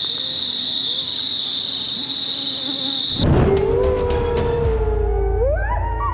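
Night insects calling with a steady high-pitched trill. About three seconds in this gives way to a wolf howling, long held notes that rise near the end, over a low rumble.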